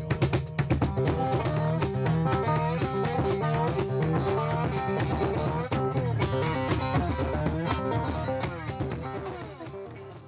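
Instrumental band music: a lap-style slide guitar plays a melody of gliding notes over bass and percussion, fading down near the end.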